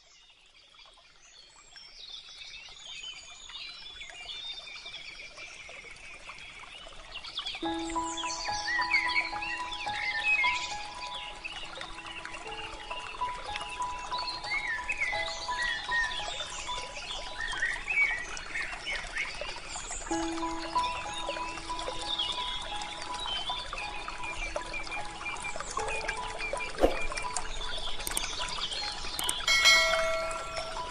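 Forest ambience fading in: many birds chirping and singing over a steady rushing background. About seven seconds in, slow, soft melodic music with held notes joins, its phrase starting again about twenty seconds in. Near the end comes a short bright chime.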